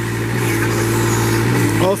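Kubota V2203 four-cylinder diesel of a Moffett M5000 truck-mounted forklift running steadily while the hydraulic side shift is worked, with a higher tone joining the engine hum for about a second in the middle.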